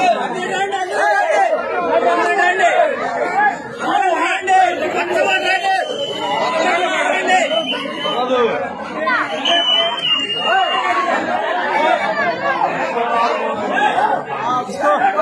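A large crowd of men talking and shouting over one another, many voices at once in a continuous hubbub with no single voice standing out.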